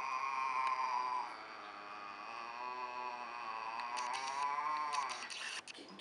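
A domestic cat yowling in one long, wavering, drawn-out moan that dips and swells and stops about five seconds in: an agitated, territorial cry at another cat outside.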